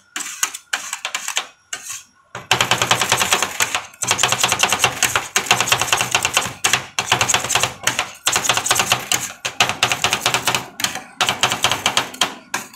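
Two metal spatulas chopping and tapping on a steel cold plate, working a mass of ice cream. It starts as sparse clicks and becomes a fast, nearly continuous metallic rattle a couple of seconds in.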